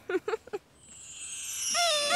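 A short laugh, then a falling whoosh that grows louder. Near the end a wobbling, warbling tone comes in, a cartoon scene-transition sound effect leading into music.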